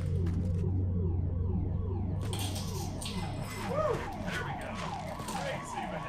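A car alarm sounding as a rapid run of falling electronic whoops, about three a second.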